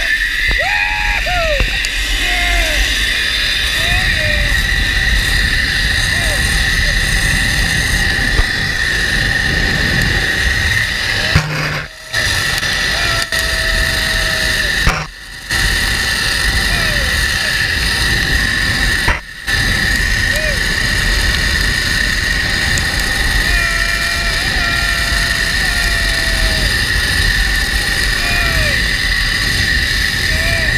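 Zipline trolley pulleys running along a steel cable at speed: a steady, loud rolling whine, with wind rushing over the camera. The sound drops out briefly three times in the middle.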